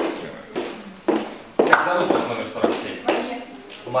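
High-heeled footsteps knocking on a wooden floor, about two steps a second, with low voices in the room.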